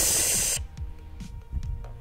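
Pressurised CO2 from a cartridge inflator hissing as it blasts into a water-filled soda bottle and out through a straw. The loud hiss cuts off suddenly about half a second in.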